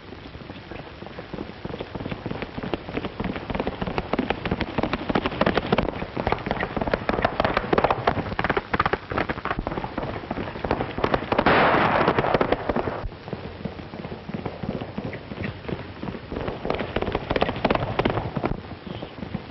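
A rapid, dense clatter of hard impacts that builds up, loudest about twelve seconds in.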